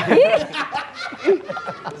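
Several people laughing in short bursts, with bits of speech mixed in.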